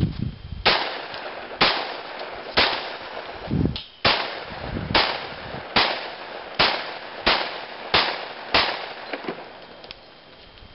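Ten pistol shots from a 10mm Glock 29, fired about one a second and a little faster toward the end.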